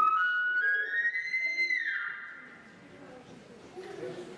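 Elk bugle imitation on a call: a high whistle that climbs in steps, holds at the top, then breaks downward and fades about two seconds in.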